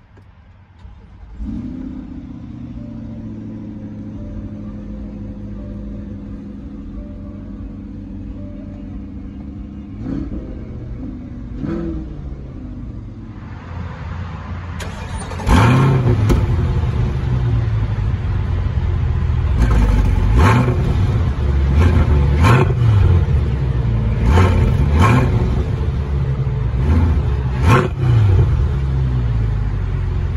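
A 2020 Corvette Stingray's 6.2-litre V8 starts at the push of a button about a second and a half in and settles into a steady high idle, heard from inside the cabin, with a couple of light blips. Then, heard at the rear quad exhaust tips, the engine is revved in a string of loud, short blips, each rising and falling back to idle.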